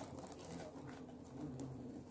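Dry straw rustling and crackling faintly as it is pushed by hand into a clay chulha and catches fire, with a faint low cooing call in the background.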